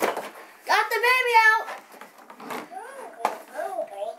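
A child's voice making a drawn-out wordless sound about a second in, then fainter vocal sounds, with a few short knocks from cardboard toy packaging being handled.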